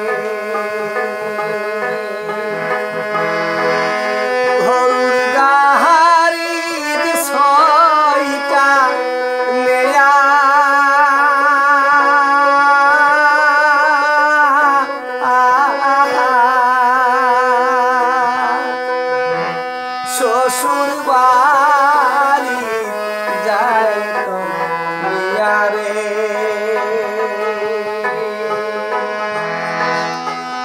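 A man singing a Bhawaiya folk song with long, wavering held notes, over steady held instrument notes that shift in pitch a few times.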